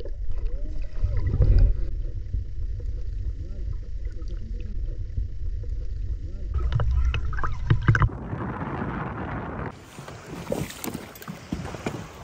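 Muffled rumble and water movement heard through a camera held underwater, with a louder hissing splash about eight seconds in. The sound then cuts to a quieter background with a faint low hum.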